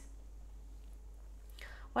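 A pause in a woman's narration: faint steady background hum, with a breath drawn in about a second and a half in, just before she speaks again.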